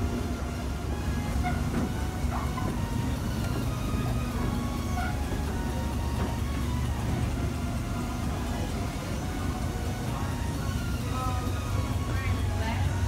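Steady low hum of a moving escalator, with faint music and distant voices behind it.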